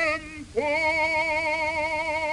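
Background music: a solo singer holding long notes with strong vibrato. One note ends just after the start, and after a short break about half a second in a new note is held to the end.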